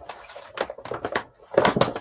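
Paper rustling and crinkling as a kraft paper envelope is handled, with a louder flurry of rustles about three quarters of the way through.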